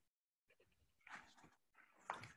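Near silence on a video call, with a few faint short noises a little past halfway.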